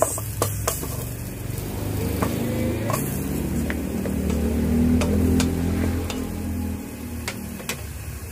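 Wooden spatula stirring chicken wings in a metal wok, with scattered sharp clicks of the spatula against the pan, over a low steady hum.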